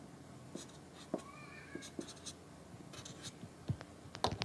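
Marker pen drawing and writing on paper: faint, scratchy strokes of the felt tip with small taps as it touches down, in short irregular bursts.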